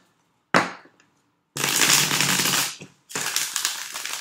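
A tarot deck being shuffled by hand on a tabletop. A sharp tap comes about half a second in, then two runs of rustling cards, each about a second long.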